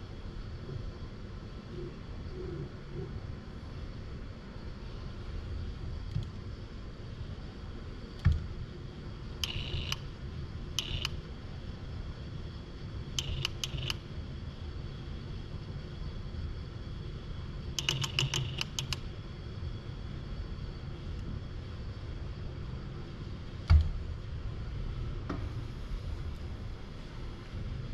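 Steady low hum of a robot workcell, with several short bursts of rapid light metallic clicks as a robot gripper works at a rack of steel bolts. Two single sharp knocks, the louder one near the end.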